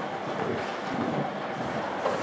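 Steady background noise of a busy dance studio as couples step and shuffle on the wooden floor, with no distinct music or voice.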